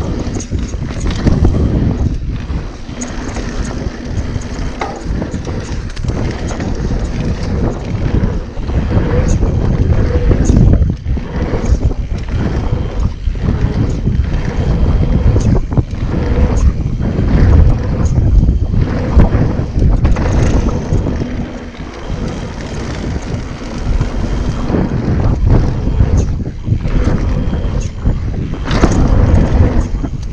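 Wind rushing over the microphone and tyre-on-dirt rumble from a mountain bike descending a singletrack trail. Short knocks and rattles come through throughout as the bike hits bumps, and the loudness rises and falls with speed.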